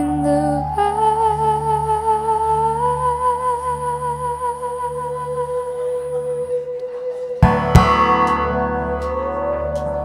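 Acoustic guitar played flat on the lap with a slide: long held notes that glide slowly upward in pitch, then a sharp strike of the strings about seven and a half seconds in, left ringing.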